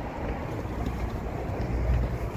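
Low wind rumble on the microphone, with no clear distinct events, swelling somewhat near the end.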